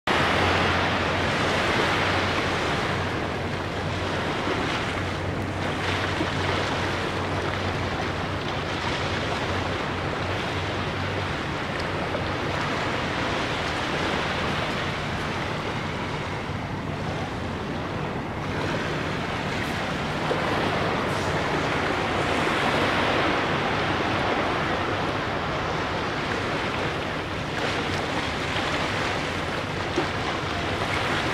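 Small waves washing onto a sandy beach on calm water: a steady surf wash that swells and eases every few seconds, with a faint low steady hum underneath.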